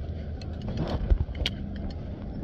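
A few light metallic clicks from a parasail harness's rings and carabiner being handled, over a steady low rumble.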